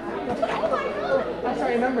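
Several voices chattering over one another, with no music under them; a voice says "I remember" near the end.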